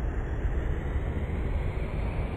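Motor scooters idling in street traffic: a steady low rumble.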